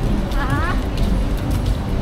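Busy city-street ambience: a steady low rumble of traffic, with passersby's voices briefly heard about half a second in.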